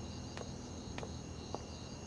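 Crickets chirping steadily, a constant high-pitched insect chorus, with a few faint soft ticks.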